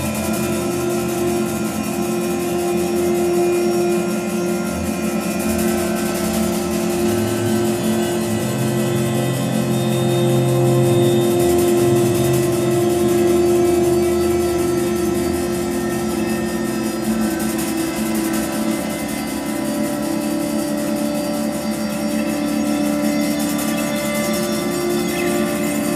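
Live all-electronic music from a laptop and keyboard synthesizer: layered, sustained drone tones held steady with no beat. A low bass tone shifts pitch partway through and fades out later on.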